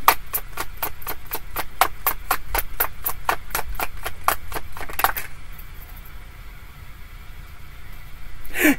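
A deck of tarot cards shuffled by hand: a rapid, even run of crisp card clicks, about five a second, that stops about five seconds in.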